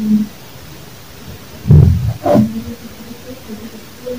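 Amplified playback of a phone voice recording: a loud, low, distorted burst right at the start and another about two seconds in, followed by a brief higher sound, with faint short hums in between.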